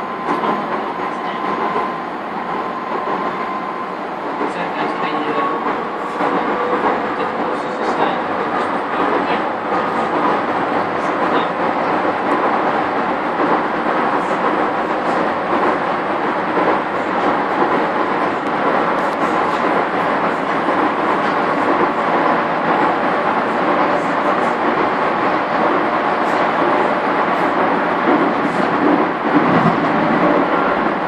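Docklands Light Railway train running on its track, heard from inside the front car: a steady rumble of wheels on rail under a constant motor whine, with occasional faint clicks. It grows a little louder over the first several seconds as the train gathers speed.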